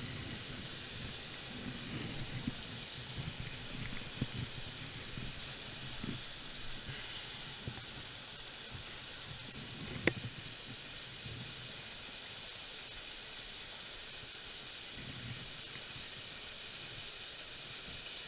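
Steady rushing of a small waterfall in a mountain stream. Soft knocks and rustles of handling close to the microphone come and go over it, with one sharp click about ten seconds in.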